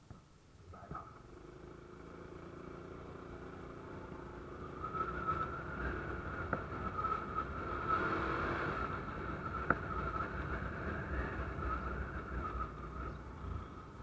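Honda Wave 125's single-cylinder four-stroke engine running with road noise while riding along a narrow street, with a steady whine over a low hum. The sound swells louder for several seconds in the middle as a motorized tricycle is passed close alongside, with two short sharp knocks.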